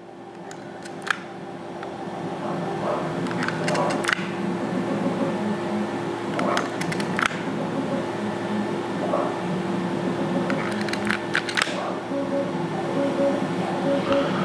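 Sharp clicks from a hand-squeezed epoxy dispensing gun, coming in small clusters, as Hysol epoxy is pushed through a long mixing nozzle. A steady hum runs underneath.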